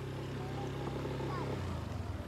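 A steady, low motor hum that drops slightly in pitch near the end.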